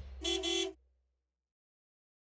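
A single short horn-like honk, about half a second long, just after the music cuts off.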